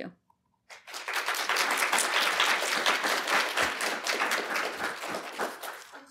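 Audience applauding. The clapping starts about a second in, swells, then thins and fades out near the end.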